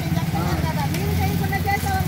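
A steady low rumble of road traffic, with voices talking over it.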